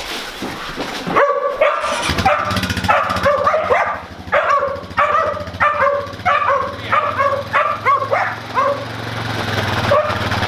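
Farm working dogs barking and yipping excitedly in quick short calls, about two a second, starting about a second in and running until near the end. A quad bike's engine runs steadily underneath and grows a little louder toward the end.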